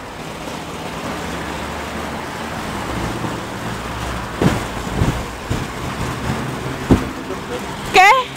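Road traffic: a motor vehicle's engine and tyre noise swelling over the first few seconds and holding steady, with a few short sharp sounds in the second half.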